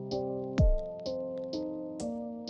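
Background music with a steady electronic beat: held keyboard chords that change every half second or so, short regular hi-hat ticks, and a low kick drum whose pitch drops, about half a second in, the loudest sound.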